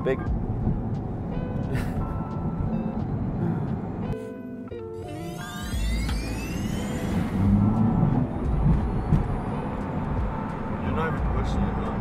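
Road and wind noise rushing into a roofless Tesla Model 3-based chop-top car while it is driven. About halfway through, the electric drive motor's whine climbs steeply in pitch as the car accelerates hard.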